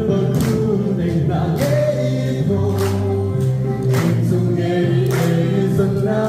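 A man sings a song into a microphone, amplified through a PA speaker over sustained electronic keyboard chords. A steady beat runs under it, struck about once a second, which fits the audience clapping along.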